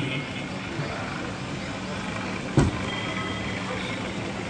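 Steady background hiss with a low, even hum, broken by one short knock about two and a half seconds in.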